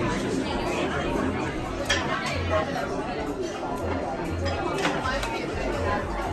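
Restaurant dining-room chatter: many overlapping voices talking at once, with a couple of sharp clinks of cutlery on crockery.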